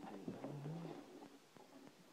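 Faint rustling and small clicks of plastic packaging being handled, with a brief low hum about half a second in.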